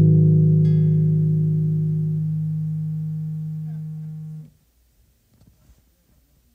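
Acoustic guitar's final chord ringing out and slowly fading, with a single higher note plucked about a second in. The sound cuts off abruptly about four and a half seconds in.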